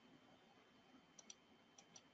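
Four faint computer mouse clicks in two quick pairs in the second half, over near-silent room tone.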